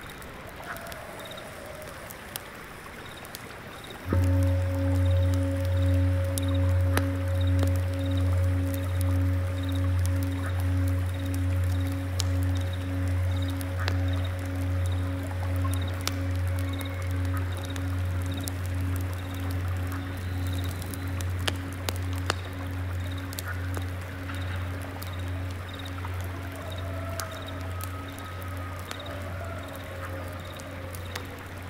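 A low singing bowl is struck about four seconds in and rings on, wavering in loudness about once a second as it slowly fades. Beneath it a stream flows, a single insect chirps at a steady rhythm, and small crackles of burning incense come and go.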